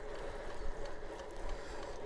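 Steady riding noise from a Trek Checkpoint ALR 5 gravel bike rolling over wet tarmac at speed: tyre noise and wind rush on the microphone, with a faint steady hum.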